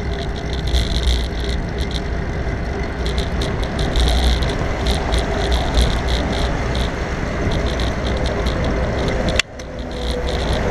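Wind buffeting the microphone and tyre noise from a bicycle in motion, a steady low rumble with frequent small clicks and rattles from the bike and camera mount. The sound suddenly drops away for a moment near the end.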